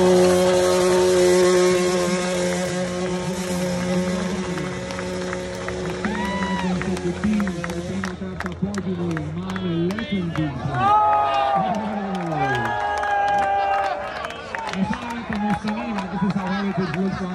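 Music with long held notes over crowd noise for the first half. About halfway through the music gives way to an announcer's voice over the loudspeakers, with scattered clapping.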